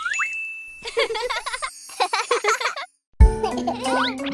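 Cartoon sound effects: a quick rising whistle-like glide into a held high tone, then a run of bright jingling, tinkling tones. They cut off in a brief silence, and an upbeat children's song starts with a steady beat near the end.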